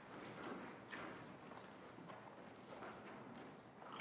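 Faint footsteps of a man walking up to a lectern, about two steps a second.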